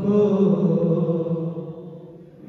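Male voices chanting an Urdu noha, a Shia lament, in one drawn-out melodic line that fades away near the end.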